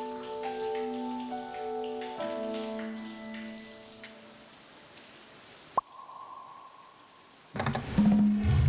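Light background music of bell-like mallet notes over the hiss of a running shower. The music stops about halfway and a fainter hiss goes on, broken by one sharp click. A sudden louder burst of sound comes in near the end.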